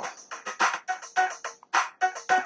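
A programmed drum beat played back from an Akai MPC Touch, with a fast, even hi-hat pattern over drums and percussion.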